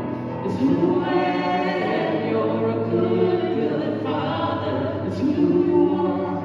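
Church worship team singing a song, a man's and a woman's voices on microphones, with long held notes.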